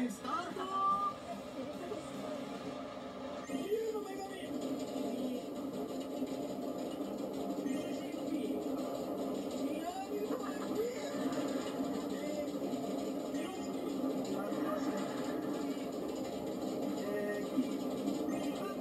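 Television sound playing in a room: background music with faint voices.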